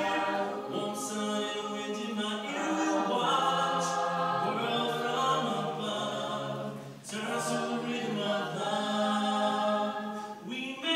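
Mixed-voice high school chorus singing a cappella in close harmony, with a brief break between phrases about seven seconds in.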